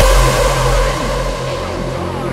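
Hardstyle music: a heavy distorted bass held under repeated falling pitch sweeps.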